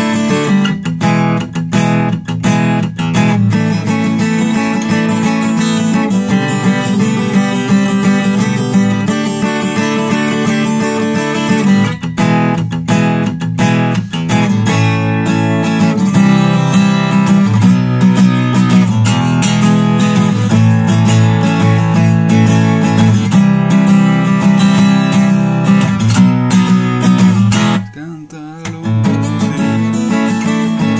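Steel-string acoustic guitar strummed down and up, playing a chord riff of suspended A and D shapes resolving to E. Short palm-muted chops cut between the ringing open chords. The playing breaks off briefly near the end, then starts again.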